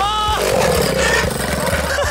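Single-cylinder 125cc Lifan four-stroke engine of a small go-kart revving hard as the kart wheelies, then its pitch falling slowly as the throttle comes off.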